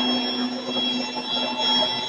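Rotary-screw air compressor with a permanent-magnet motor on a variable-speed drive running loaded while it fills the air tanks: a steady hum with several high, unchanging whining tones.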